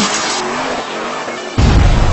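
Tyre squeal from a car sliding, laid over electronic music; about one and a half seconds in, a loud, deep bass hit comes in.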